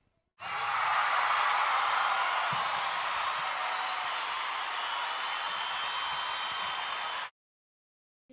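An edited-in burst of crowd applause. It starts abruptly about half a second in and cuts off suddenly about seven seconds later, with dead silence on either side.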